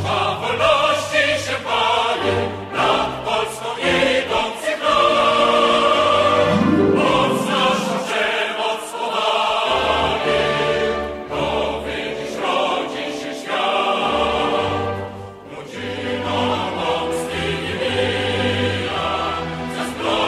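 Music with a choir singing sustained lines.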